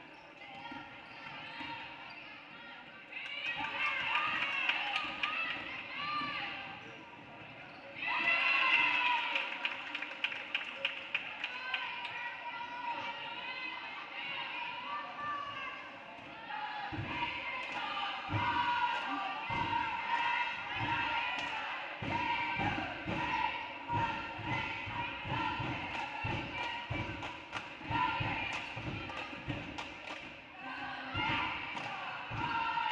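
Basketball dribbled on a hardwood gym floor, a steady run of bounces from about halfway through, under shouting voices from the players and benches.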